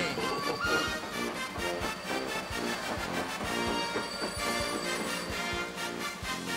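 Brass band music with a steady drum beat.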